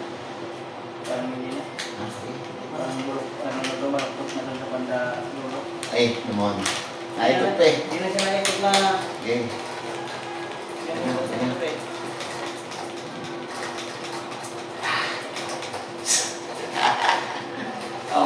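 Indistinct talking over a steady hum, with scattered clicks and knocks.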